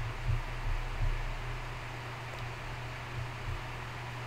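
Room tone from the microphone: a steady hiss with an uneven low rumble underneath and a few faint low bumps in the first second.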